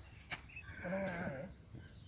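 A hoe blade strikes the soil once near the start, then a farm animal bleats: a single wavering call of about half a second, a little under a second in.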